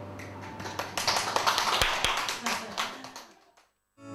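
Clapping, a burst of applause that swells about a second in and dies away near the end, with some voices mixed in.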